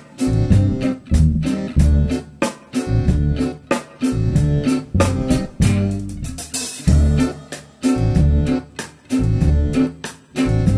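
A live acoustic band of acoustic guitar, upright double bass, accordion and drums playing an instrumental passage with a steady, driving beat of about two strokes a second.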